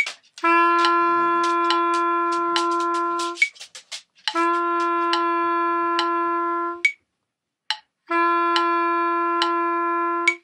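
A wind instrument plays three long held notes on the same pitch, each about three seconds with a short gap between, over a metronome clicking steadily at 70 beats per minute.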